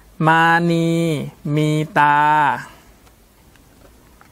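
A man reading Thai aloud slowly, word by word, in long drawn-out syllables: "Mani mi ta".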